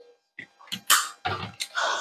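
A woman drinking from a plastic water bottle after cardio, then breathing out hard in several short noisy breaths, with a longer breath near the end.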